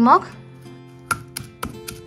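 Stone pestle pounding in a stone mortar, crushing green chillies, garlic and ginger with salt: sharp knocks at about four a second, starting about a second in.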